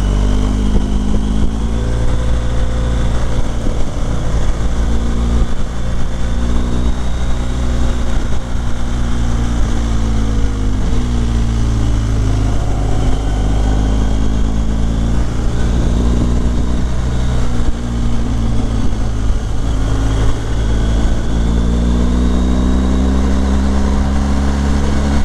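BMW R 1250 GS HP's boxer-twin engine running under way on the move. Its pitch rises and falls slowly as the throttle opens and closes through the bends.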